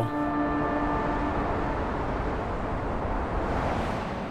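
A steady rushing noise that swells a little about three seconds in, with a faint held tone fading out over the first two seconds.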